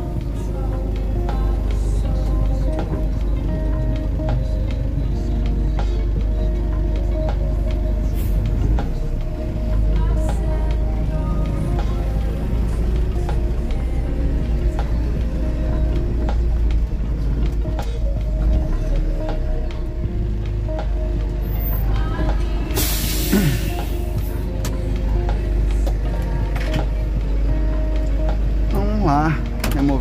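Background music over the steady low running of a tow truck's engine, heard inside the cab while driving. About three-quarters of the way through, a loud hiss lasting about a second.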